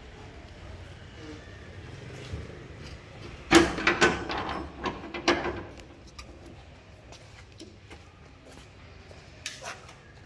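A sheet-metal door clanking and rattling as it is unlocked and pushed open, with a cluster of loud metallic knocks from about three and a half to five and a half seconds in, then a few lighter clicks near the end.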